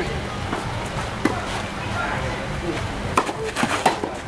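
Tennis balls struck with rackets and bouncing on a clay court during a rally. There is a sharp hit about a second in, then several hits and bounces close together near the end, over background voices.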